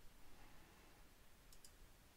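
Near silence: faint room tone, with a couple of faint clicks about one and a half seconds in.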